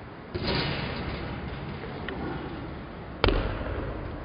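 Basketball impacts in a gymnasium: a bang about a third of a second in that rings on in the hall's echo, then a sharper, louder one a little after three seconds.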